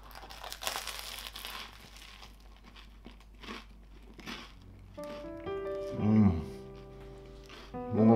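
A crunchy bite into a Philly cheesesteak sub on a toasted bread roll, followed by chewing. Light background music comes in about five seconds in, with a short "mmm" just after.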